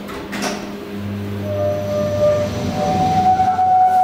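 KONE EcoDisc gearless traction elevator machine starting a run: a click, then a low hum and a steady electric whine that steps up to a higher pitch near the end.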